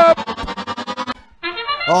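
A FIRST Robotics Competition match-start sound cue over the arena speakers, signalling the start of the match. It is an electronic brass-like fanfare that pulses rapidly for about a second, breaks off briefly, then holds a tone near the end as the announcer starts talking.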